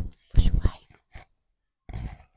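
A woman whispering close into a handheld microphone in a few short, breathy bursts.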